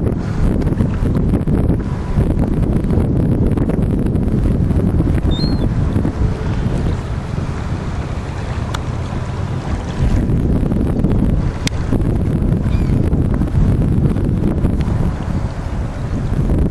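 Wind buffeting the microphone: a heavy, gusting low rumble throughout, with a couple of faint high chirps.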